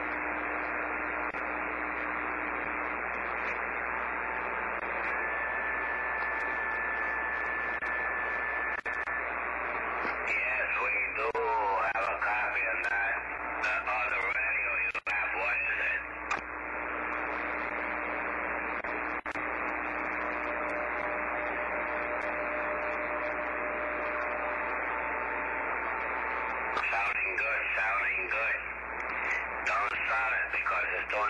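CB radio receiver on channel 38 lower sideband: steady static hiss limited to the voice band, with a few faint steady whistles. Around ten to thirteen seconds in and again near the end, garbled, warbling sideband voices come through.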